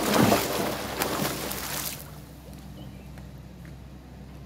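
Splashing as a swimmer dives under the surface of a swimming pool, loudest in the first two seconds. It then fades to a low steady hum.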